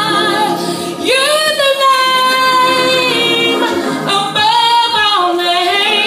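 A woman singing a gospel song in long, drawn-out notes, one note held steady for about two seconds starting about a second in, with vibrato on the others.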